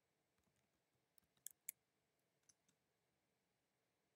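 Faint computer keyboard keystrokes: a quick run of about a dozen light clicks as a short command is typed, with two louder clicks in the middle of the run.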